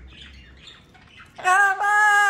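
Quiet for over a second, then a blue-fronted amazon parrot lets out a loud, drawn-out call at a steady pitch, with a brief break before it carries on.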